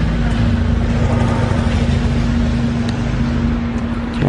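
City street traffic with a car engine running close by: a steady low hum over a wash of traffic noise, the engine's lower drone fading out near the end.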